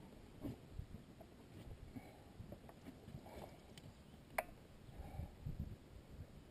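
Faint handling noises on a fishing boat: scattered soft knocks and thumps, with one sharp click about four and a half seconds in.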